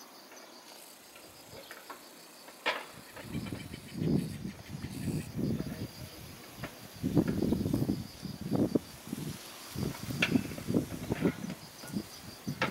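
Insects chirping steadily in the background, with a few sharp knocks and, from about three seconds in, irregular low muffled rumbles and thumps.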